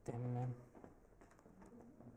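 A man's short hummed 'hmm': one steady low note of about half a second right at the start. After it comes quiet room tone with a few faint clicks.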